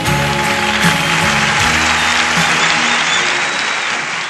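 Studio audience applauding as a rock band's last chord is struck and held under the clapping. A few high whistles come from the crowd near the end.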